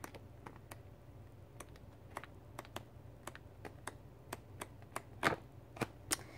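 Sheets of a 12x12 pad of double-sided printed cardstock being flipped one after another, each turned sheet giving a faint soft click at an uneven pace of a few per second, with a louder flap just past five seconds in.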